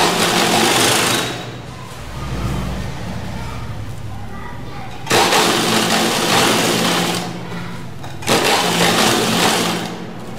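Sewing machine stitching in three runs: one at the start lasting about a second, one from about five seconds in lasting about two seconds, and a shorter one near the end. A steady low hum continues between the runs.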